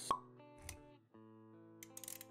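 Intro music with held notes, punctuated by a sharp pop sound effect right at the start and a soft low thump midway. The music cuts out briefly about a second in, then resumes.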